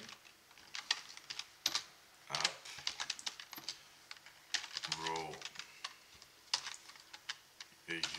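Computer keyboard typing in irregular bursts of keystrokes with short pauses between them.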